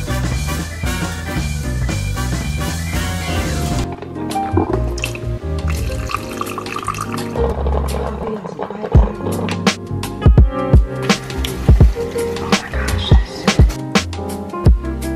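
Upbeat background music throughout. About four seconds in, the gurgling and dripping of a Proctor Silex drip coffee maker brewing into its glass carafe joins it. Over the last few seconds there is a run of sharp knocks.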